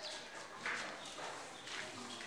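Two footsteps scuffing on a bare concrete floor, with faint bird chirps in the background.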